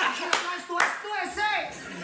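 Two men laughing hard, one clapping his hands about three times in the first second.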